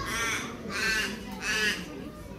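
A bird calling three times in a row, each call about half a second long, evenly spaced.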